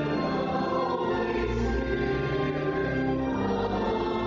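Many voices singing a hymn together in held notes, with instrumental accompaniment.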